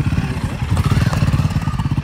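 Royal Enfield Guerrilla 450's single-cylinder engine running as the motorcycle is ridden off at low speed, with a steady, rapid exhaust beat.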